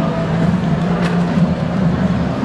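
Ambience of a crowded indoor exhibition hall: a steady low hum under the general noise of the crowd.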